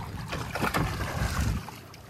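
Low steady rumble of a fishing boat's engine with wind buffeting the microphone and a few short splashes from the water alongside. The rumble thins out near the end.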